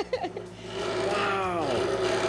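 An 1890s wood shaper's spinning cutter cutting a profile into the edge of a board: a steady machine whine that drops in pitch about midway and then holds.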